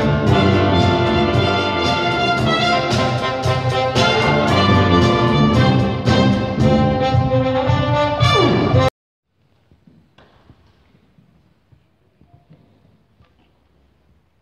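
A brass wind band with drums plays loud full chords to a regular beat. About nine seconds in, it ends on a falling slide in pitch and the sound cuts off abruptly, leaving only faint room noise.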